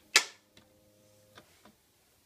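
Plastic Lego pieces clicking and clattering as a small brick-built model is handled: one sharp, loud clatter just after the start, then a few faint clicks.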